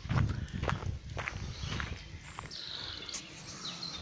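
Footsteps of a hiker walking on a dirt forest path, steady steps a little under two a second.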